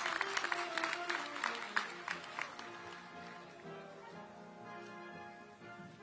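Audience clapping over instrumental music; the applause dies away about halfway through, leaving the music playing on.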